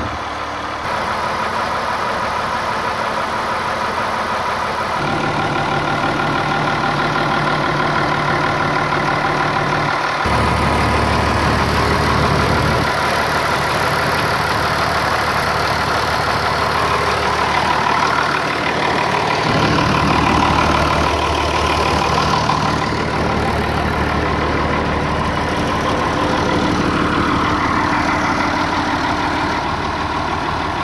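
Oliver 1850 tractor engine idling steadily. Its sound changes abruptly several times, every few seconds.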